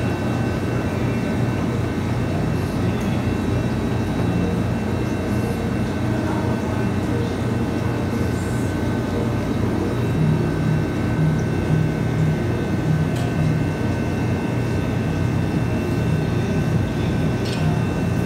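Steady low machine hum with a faint, steady high whine above it.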